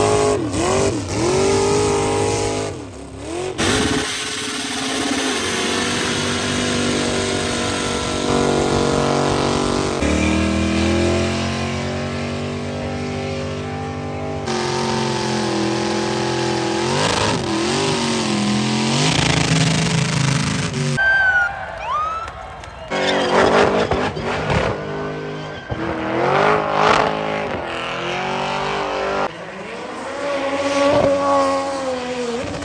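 Burnout cars' engines revving hard, the pitch swooping up and down, with tyres spinning and squealing. Several short clips follow one another with abrupt cuts.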